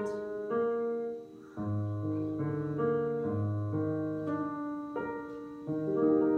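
Piano playing a slow melody over held chords, with a short pause about a second in.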